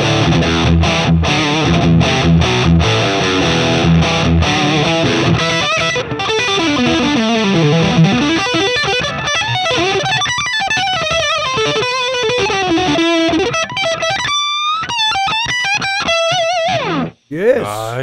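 Ibanez JS1BKP electric guitar played through a Marshall JCM800 on its gain channel with the sustainer and effects switched off: a low, chugging distorted rhythm riff for the first few seconds, then fast single-note lead runs and bent, vibrato-laden held notes. The playing stops about a second before the end.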